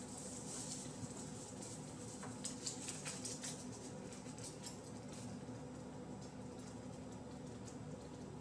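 Fingers pressing and rubbing aluminium foil tape down along the edge of an insulated glass pane: soft crinkling and scratching in short bursts, busiest about two to three seconds in, over a faint steady hum.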